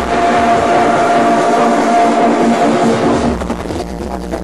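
Electronic dance music in a DJ set, with the bass and kick drum dropped out: a held synth note over a hiss-like build-up. The beat starts back in near the end.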